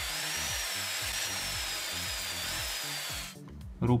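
Electric drill boring a hole through the thin sheet-metal housing of a lamp, a steady high whine that wavers a little under load, stopping about three seconds in as the bit breaks through.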